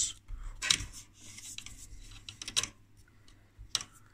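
A few sharp plastic-and-metal clicks and light rattles from handling the loose mains voltage selector of a vintage tube oscilloscope, three of them standing out spaced out over a few seconds.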